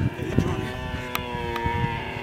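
A dromedary camel calling with one long, steady moan.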